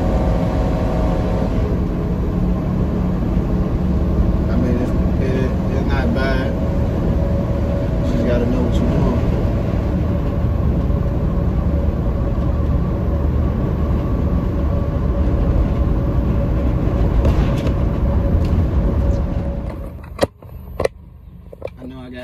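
Steady low engine and road rumble inside a delivery truck's cab while driving. It cuts off abruptly near the end, leaving a few sharp clicks.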